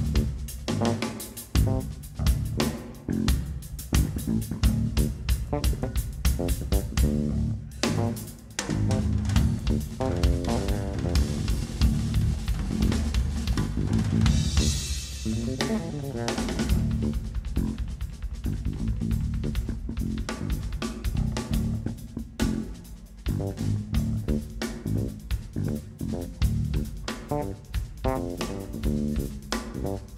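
Live drum kit and electric bass guitar playing together: fast, dense drumming over a driving bass line, with a short break about eight seconds in.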